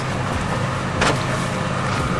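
A motor running steadily with a low hum, and one short click about a second in.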